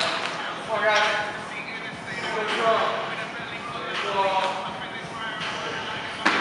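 Indistinct voices talking, in short spells a second or so apart, with no clear words.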